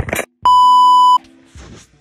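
A brief clatter, then a single loud electronic beep: one steady high tone lasting under a second, starting about half a second in. Faint background music plays underneath.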